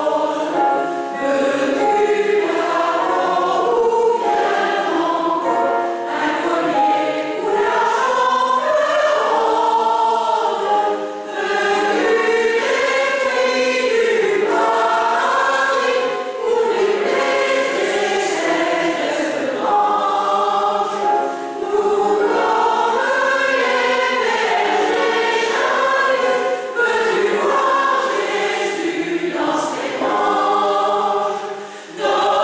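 Mixed choir of women's and men's voices singing a piece in parts, in sustained phrases with brief breaks between them.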